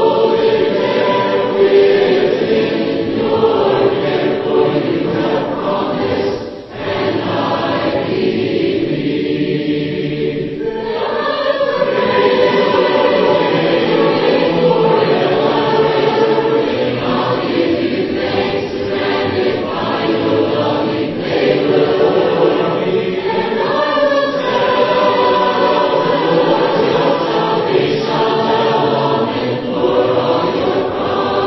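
Mixed voices singing a hymn in four-part harmony, unaccompanied. About halfway through they move into a faster chorus.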